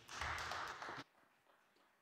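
A short burst of rustling noise for about a second, cut off suddenly, as if the lectern microphone's channel closed.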